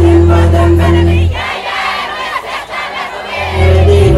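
Loud party music with a heavy bass line, and a crowd singing and shouting along. The bass cuts out about a second in, leaving mostly the crowd's voices, and kicks back in near the end.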